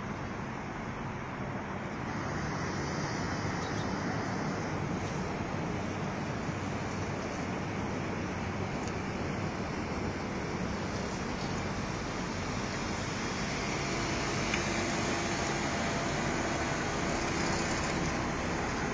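Steady engine and tyre noise of a Hummer H3 SUV driving slowly across a parking lot. It grows a little louder about two seconds in, and a faint steady hum joins over the last few seconds as it draws close.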